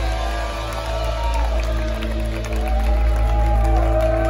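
Live rock band holding a sustained chord after the drums stop, a steady low drone with sliding high notes wailing over it, with some crowd cheering underneath.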